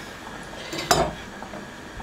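A steel chef's knife knocks once against a bamboo cutting board about a second in, as parboiled potato is cut and handled, with faint handling noise around it.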